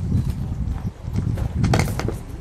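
Wind rumbling on the microphone outdoors, with a few short sharp knocks about a second and a half in, the loudest just before the end.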